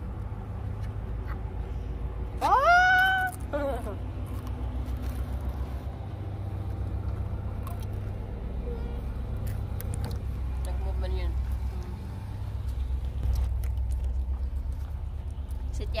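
A toddler's high-pitched whining cry, rising then falling over about a second, over a steady low rumble.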